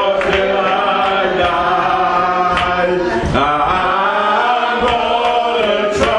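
Slow hymn singing in long, drawn-out held notes that slide from one pitch to the next.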